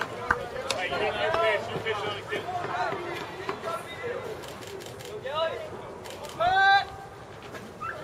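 Scattered shouts of encouragement from spectators and players at a baseball game, with one loud yell about six and a half seconds in. A single sharp click comes about a third of a second in.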